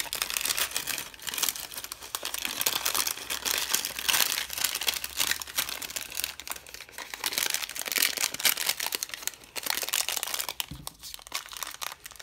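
Cellophane and paper packaging crinkling and rustling as hands fold and handle it, a dense crackle for about ten seconds that thins out near the end.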